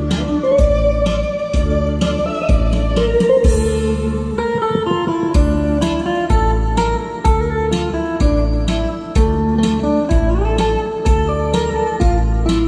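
Instrumental introduction of a karaoke backing track for an old Korean trot song: a lead melody with some sliding notes over bass and a steady drum beat, before the vocal comes in.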